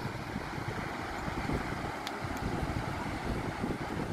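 Strong current pouring out of a lagoon spillway, a steady rushing noise, with wind buffeting the microphone underneath.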